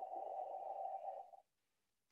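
A man's long, breathy exhalation through an open mouth, part of a breathing exercise, lasting about a second and a half and stopping abruptly.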